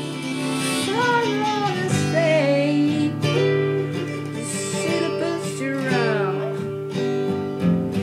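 Acoustic guitar playing a slow blues accompaniment, with a melody line of sliding, bending notes above it.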